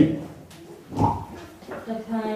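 Speech only: a man talking into a microphone in short phrases with a pause, one brief syllable about a second in and talk resuming near the end.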